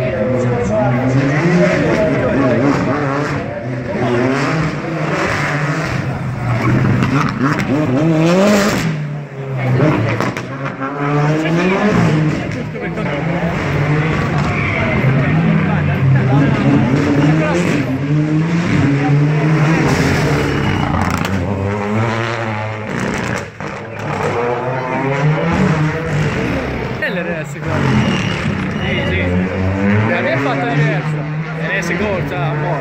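A rally car's engine revs up and down again and again as it drives a tight stage, its pitch rising and falling through the gears.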